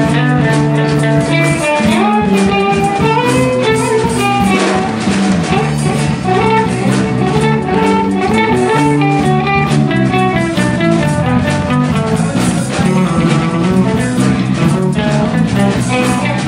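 Live band playing an instrumental funk tune: electric guitars over a drum kit, with a guitar picking out a moving melodic line.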